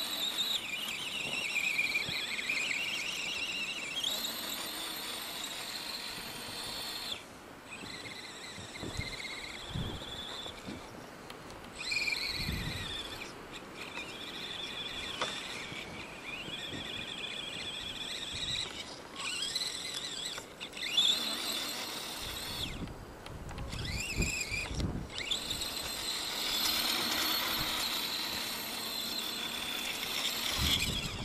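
Electric motor and gear drivetrain of an Axial radio-controlled truck whining, its pitch rising and falling as the throttle is worked, with several short breaks where it stops.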